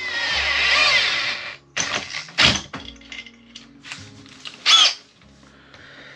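Makita cordless drill with a socket extension running in short bursts to tighten hose clamps on a diesel heater's exhaust pipe and silencer: a long wavering burst at the start, then two short ones about a second and a half and three seconds later, with light handling knocks between.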